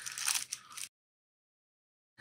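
Crinkling rustle of a thin paper wrapper being pulled off a pair of sunglasses, cutting off abruptly just under a second in.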